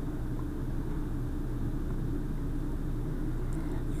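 Steady low hum and rumble of background noise on the recording, with a constant electrical-sounding hum underneath.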